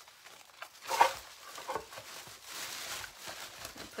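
Rustling and crinkling of artificial flowers and a fabric ribbon bow being handled and pushed into place, with a sharp tap about a second in.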